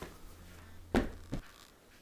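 Two dull thumps about a second in, a third of a second apart, the first the louder, over a faint low hum.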